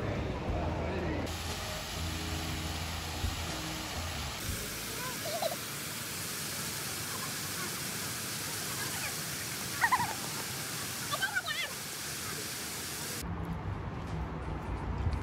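Ground-level plaza fountain jets spraying: a steady, even rush of falling water, with a few brief voice calls over it, the loudest about ten seconds in. A few seconds of street sound with a low hum come before it.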